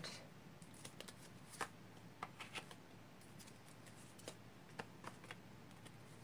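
Faint, irregular clicks and taps of tarot cards being drawn off a hand-held deck and set down on a card stand, over near-silent room tone.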